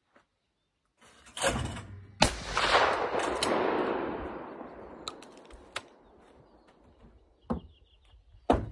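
A shotgun fires a standard 32-gram US5 shot load without a suppressor: a heavy thump, then a sharp crack about two seconds in. A long rolling echo follows, thrown back by the hills on either side of the valley, and fades out over about four seconds. A few light clicks from handling the gun come near the end.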